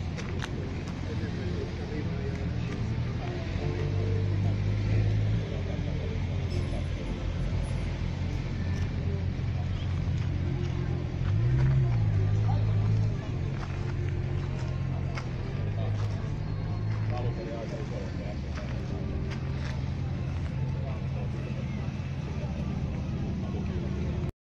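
A car engine running at idle, with its revs rising briefly about four seconds in and again about eleven seconds in.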